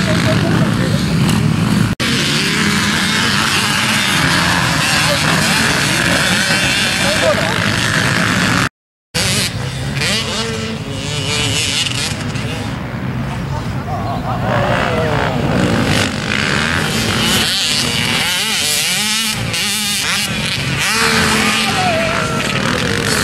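Several motocross bikes' engines running hard on a dirt track, their revs rising and falling as they pass. The sound drops out briefly about nine seconds in.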